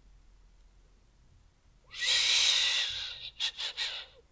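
A woman's long, breathy exhale close to the microphone, starting about two seconds in and lasting a little over a second, followed by a few soft mouth clicks.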